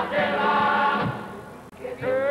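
A carnival murga's men's chorus singing a pasodoble in harmony, holding a chord that fades out about a second and a half in. The chorus comes back in near the end.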